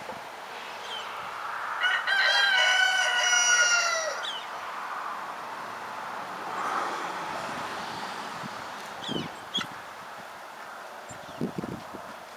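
A young cockerel under the scalpel without anaesthetic gives one long squawk of about two seconds, dropping slightly in pitch, with a few short chirps before and after it.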